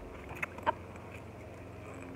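Steady low background hum with a single short spoken word, "up", a little under a second in.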